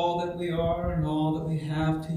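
A man's voice intoning long, held notes at a steady pitch, with a short break in the middle.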